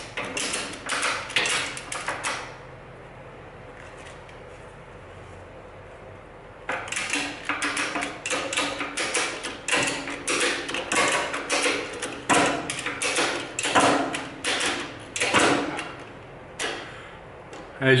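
Heavy-duty ratchet strap being cranked to compress the front coil spring of a 1964 Impala, its ratchet clacking in quick runs of clicks. It clicks for about two seconds, pauses for about four, then clicks on for about ten seconds more.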